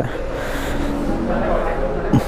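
Steady background noise with faint, indistinct voices behind it.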